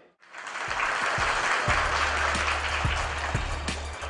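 An audience in a hall applauding, with a dense, even patter of many hands clapping. A low steady hum comes in under it about a second and a half in.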